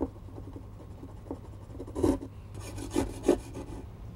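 Hand drywall saw rasping through gypsum wallboard in short, irregular back-and-forth strokes as it cuts out a small hole. The strokes are loudest about halfway through and again around three seconds in.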